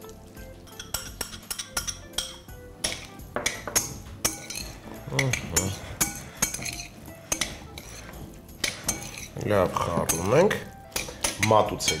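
Salad being tossed in a large glass bowl: a utensil clicks and clinks against the glass in scattered, irregular taps.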